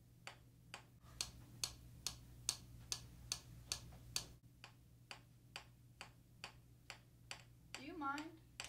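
Steady, repetitive tapping on a tabletop, a little over two sharp taps a second, kept up without a break.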